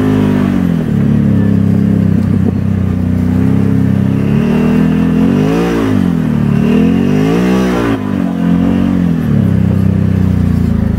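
Can-Am Maverick 1000 side-by-side's V-twin engine running under throttle, steady at first, then revving up and dropping back twice in the second half as the driver gets on and off the gas.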